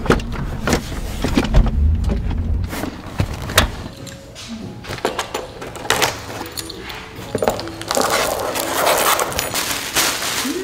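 Handling noises: scattered clicks and knocks, then, about eight seconds in, a second or two of rustling and tearing as a cardboard parcel's tape is slit and its paper wrapping pulled open.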